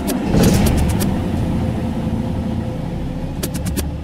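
An electronic music track given over to a dense, engine-like rumbling noise, cut through by quick stuttering clicks about half a second in and again near the end.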